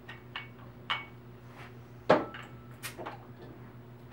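A crown cap being pried off a glass beer bottle with a bottle opener: a few short metal-on-glass clicks and clinks, the loudest about two seconds in.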